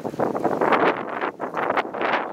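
Wind buffeting the microphone in irregular gusts, a rough rushing noise that surges and drops every fraction of a second.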